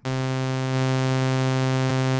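Synthesized sawtooth-wave test tone, a steady low buzzy note held at one level, played through an FL Studio channel strip pushed into what looks like clipping. Thanks to floating-point headroom and an unclipped master, it sounds the same as the clean signal.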